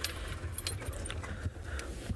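Low, steady rumble of a safari vehicle's engine running, with several light clicks and rattles over it.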